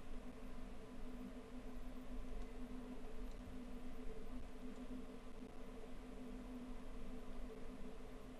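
Faint room tone: a steady low hum with an even hiss underneath and no distinct events.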